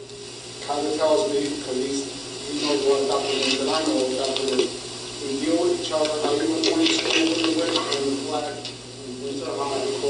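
A person talking away from the microphone in a large echoing room, words indistinct.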